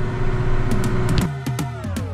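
Kubota tractor engine running steadily while driving, then electronic background music coming in about a second in, with percussive hits and a steep falling sweep.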